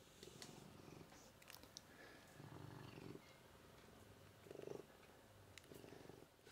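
A domestic cat purring faintly in short rhythmic bouts over a low, even recording hiss, with a few faint clicks.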